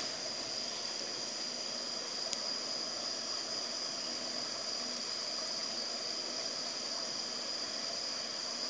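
Steady background noise from an open microphone: a constant high-pitched whine over an even hiss, with one faint click a little over two seconds in.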